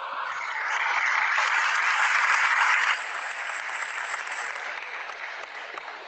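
Applause: a dense patter of clapping, loudest for the first three seconds, then quieter and steady until it stops near the end.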